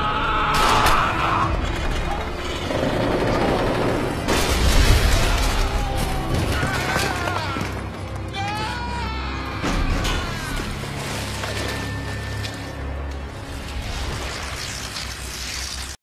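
Dramatic film score with a person's wavering cries over it and a few sharp crashes.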